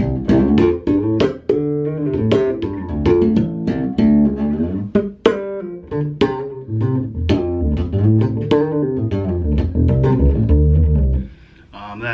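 Skjold Greyling electric bass with its passive Skjold pickup switched to parallel, played fingerstyle through an Aguilar bass amp. It plays a busy line of short, sharply attacked notes that stops about eleven seconds in.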